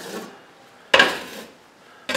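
Metal drywall knife scraping across wet knockdown texture on a wall, flattening the high spots: one sudden stroke about a second in that fades over half a second, after the fading tail of the previous stroke.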